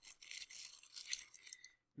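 Packaging being handled and rummaged in a cardboard box as parts are taken out: a soft rustling, scraping noise that stops just before the end.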